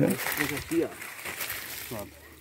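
Mostly speech: a man's short spoken "né?", then faint, broken snatches of voices over a quiet outdoor background.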